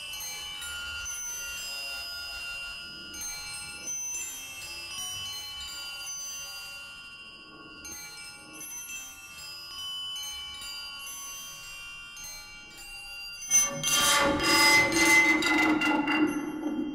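Live experimental music for percussion ensemble and electronics: several sustained, ringing bell-like tones overlap at a moderate level. About three-quarters of the way through, a sudden, much louder and denser entry cuts in.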